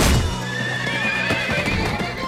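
A horse whinnying in one wavering call of about a second, over galloping hooves, with a loud hit right at the start and dramatic film score underneath.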